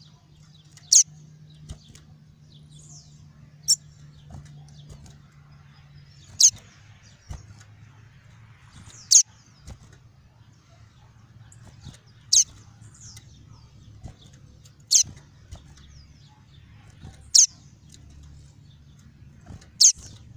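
A male papa-capim (yellow-bellied seedeater) giving short, sharp, high "tuí" call notes, one every two to three seconds, eight in all, with fainter chirps between them.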